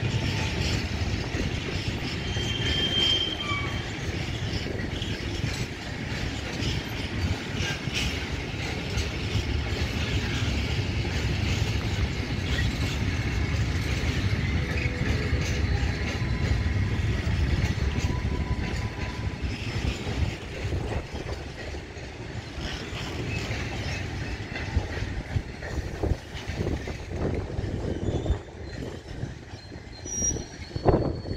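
A long rake of covered freight wagons rolling past, with a steady wheel rumble, brief thin wheel squeals now and then, and clacks over rail joints. Near the end the rumble turns more uneven, with separate knocks.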